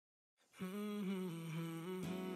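A voice humming a slow melody in long held notes, starting about half a second in.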